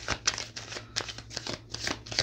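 A deck of cards being shuffled by hand: an irregular run of soft clicks, slaps and rustles, several a second.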